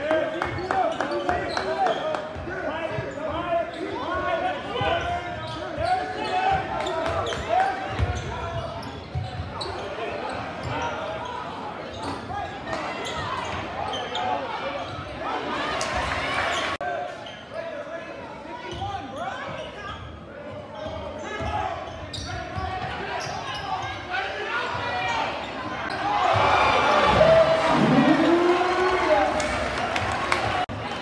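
Basketball game in a school gym: a crowd chatters steadily while a basketball is dribbled on the hardwood floor. Near the end the crowd gets louder, with one voice calling out in a falling pitch, as a shot goes up.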